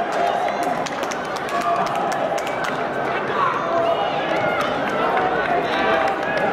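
Footballers shouting and calling to one another on the pitch, heard through the match's field sound, with scattered sharp knocks through it.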